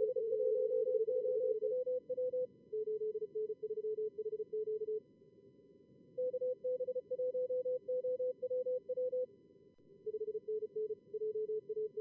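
Fast computer-generated Morse code (CW) in two pitches, one slightly higher than the other, from the two simulated radios of a contest logger's practice mode, over a steady hiss of simulated receiver noise. The two tones take turns in stretches of a few seconds, with two short pauses where only the hiss is heard.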